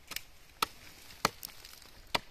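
Machete blade chopping into an earthen termite nest on the base of a tree trunk: three sharp strikes about half a second apart, with a lighter knock after the third.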